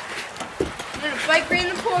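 Children's voices talking indistinctly, mostly in the second half.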